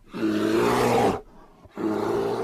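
Big-cat roar sound effect, heard twice: a roar of about a second, then a shorter second roar starting near the end.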